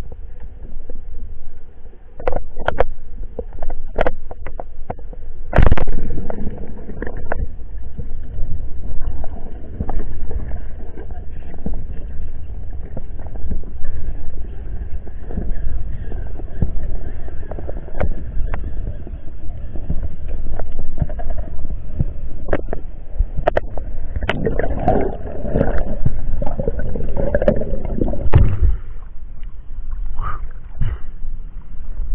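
Underwater sound through an action camera's housing: a steady low rumble of water with scattered sharp clicks and knocks, and a louder knock about six seconds in. From a few seconds before the end comes a spell of bubbling and gurgling as the diver rises, breaking the surface at the very end.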